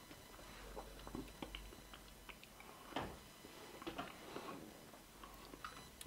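Faint chewing of a soft mouthful, banana with chili sauce, with scattered small wet mouth clicks, one slightly louder about three seconds in.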